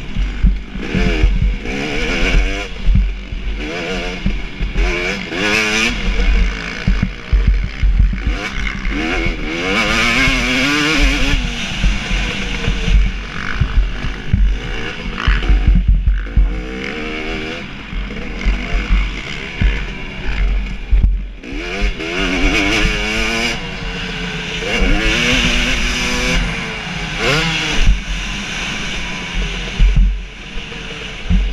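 KTM 250 SX two-stroke motocross engine racing: the revs climb repeatedly, rising in pitch, then drop back at each gear change or corner. A heavy low buffeting rumble and scattered knocks run underneath.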